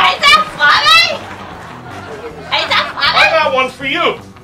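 High-pitched voices reacting to a joke: two short, sharply rising and falling cries about a second in, then more excited chatter near the end.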